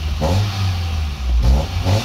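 Honda Integra Type R (DC2) B18C 1.8-litre VTEC four-cylinder with an HKS Silent Hi-Power muffler, heard from inside the cabin as the throttle is blipped twice. Each time the pitch rises quickly, showing the engine picking up revs crisply.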